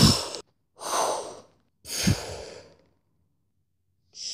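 A person's breathy huffs and grunts, three short exhaled bursts about a second apart, the first the loudest: mouth-made fight noises for a toy battle.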